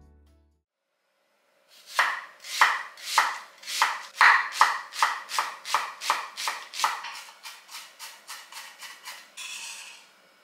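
A kitchen knife chopping onion on a wooden cutting board, starting about two seconds in at roughly three strikes a second, then quicker and lighter towards the end. Near the end a short scrape as the blade gathers up the chopped pieces.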